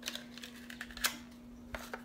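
Light clicks and taps of a small black plastic cosmetics jar being handled in the hands just after unboxing, the sharpest click about a second in and a quick pair near the end.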